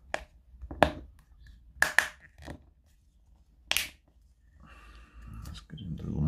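Plastic diffuser lens being pressed back onto a GU10 LED lamp by hand, giving about five sharp clicks and snaps over the first four seconds as it seats.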